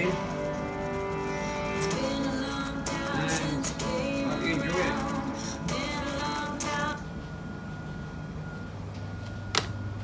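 Song with guitar and singing played through the speakers of a Yamaha AST-C10 boombox, cutting off abruptly about seven seconds in. A low steady hum is left, and a single sharp click comes near the end.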